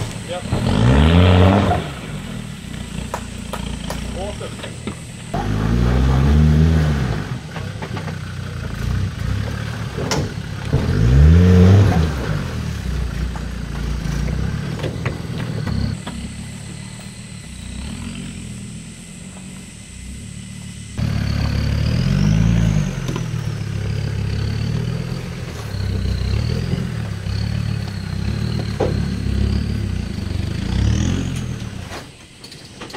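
Land Rover Defender 110's TD5 five-cylinder turbodiesel engine revving up and back down several times, its pitch rising and falling, as it climbs a wet rock ledge under load.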